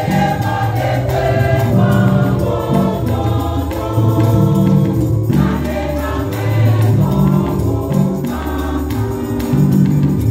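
A women's choir singing a gospel song in chorus, backed by a stepping bass line and a steady percussion beat.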